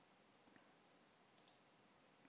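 Near silence: room tone, with a faint computer mouse click about one and a half seconds in.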